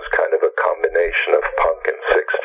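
Speech only: a voice talking continuously over a narrow, phone-like line.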